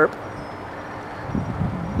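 Steady outdoor background noise between spoken remarks, an even hiss with a faint low murmur that grows slightly near the end.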